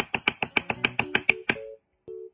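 Wooden sticks clacking together in a fast, even rhythm, about seven clacks a second, stopping about one and a half seconds in.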